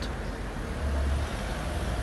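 Road traffic on a city street, with a low vehicle rumble that swells for about half a second near the middle.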